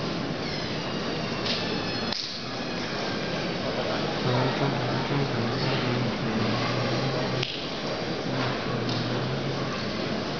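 Crowd murmur and steady background noise in an indoor tennis hall, with a few sharp knocks of a tennis ball and a low steady hum coming in about halfway through.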